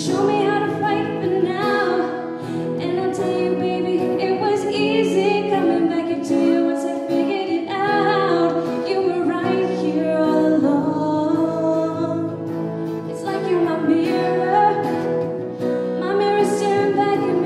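A young woman sings a slow pop song into a microphone, accompanied by an acoustic guitar.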